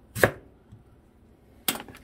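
Kitchen knife chopping through a peeled Korean radish onto a plastic cutting board: two sharp chops about a second and a half apart, the first the louder.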